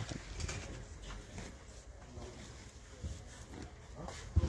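Faint shop background: quiet voices in the distance and the rustle of clothes being rummaged through in a wire bin.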